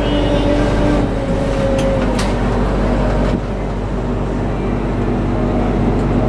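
Steady mechanical hum inside an enclosed Ferris wheel gondola, deep and even, with a few held tones over it and a couple of light clicks about two seconds in.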